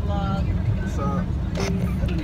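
Steady low rumble of a moving car heard from inside the cabin, with faint snatches of voices over it.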